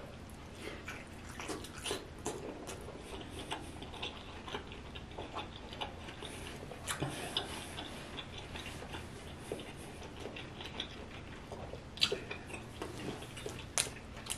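Close-miked chewing of lobster tail meat: soft, wet mouth clicks and smacks scattered throughout, with a couple of sharper clicks near the end.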